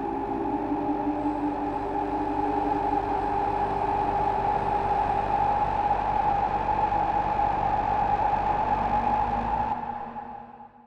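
Ambient electronic drone from synthesizers: one steady held tone over a hissing, rumbling bed of noise, dropping away right at the end.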